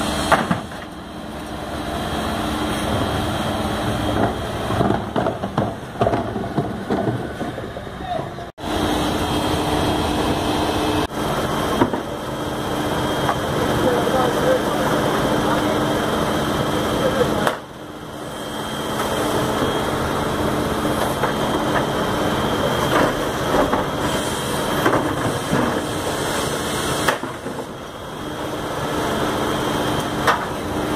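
FAUN Rotopress garbage truck at work: the engine and the continuously rotating drum give a steady hum, broken by repeated clatter and clanks as the bin lifter raises recycling bins and tips them into the drum. People's voices are heard over it.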